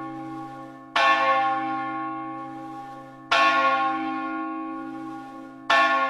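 A large bell tolling: three strikes a little over two seconds apart. Each one rings out and fades, over a deep hum that lingers between strikes.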